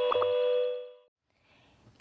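Tail of a short electronic intro sting: a held chord of clear steady tones, with two soft clicks just after the start, fades out about a second in, leaving near silence.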